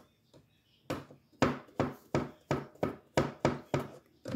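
Kitchen knife chopping mushrooms on a cutting board: a steady run of about nine knife strikes, roughly three a second, starting about a second in.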